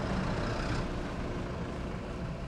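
Steady low vehicle rumble heard from inside a stopped car's cabin, with a hiss that fades about a second in.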